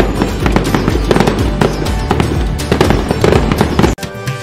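Background music layered with fireworks sound effects: repeated sharp bangs and crackles over the music, cutting off suddenly just before the end.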